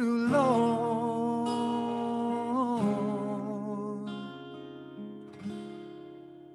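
Man singing a held, wavering note over strummed acoustic guitar chords. About three seconds in the voice stops and the final guitar chord rings on and slowly fades away, closing the song.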